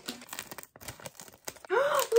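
Plastic LEGO Marvel collectible minifigure blind bag crinkling and tearing as it is pulled open by hand: a run of irregular crackles. A voice comes in near the end.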